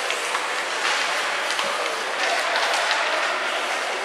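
Steady hiss of ice hockey play in a rink: skate blades scraping the ice, with a few sharp clicks from sticks and puck.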